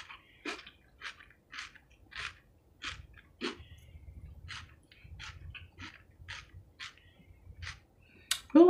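A person chewing a mouthful of coleslaw close to the microphone: a string of short, moist crunching sounds, about two a second.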